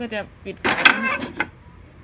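A wall clock's front cover being pressed onto the case over its glass: a scraping rub starting about half a second in and lasting about a second, with a few light clicks near the end.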